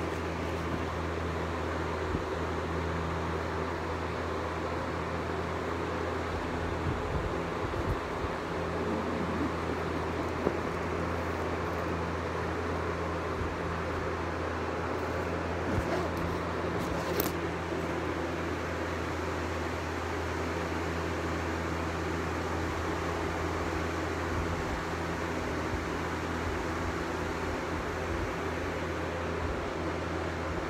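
Steady low machine hum with air noise, as from a running room fan or air conditioner, broken by a few brief clicks and knocks, the sharpest about ten seconds in.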